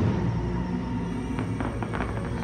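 Fireworks show soundtrack music with sustained tones, while the echo of an aerial shell's bang dies away at the start. A few faint crackles follow about a second and a half in.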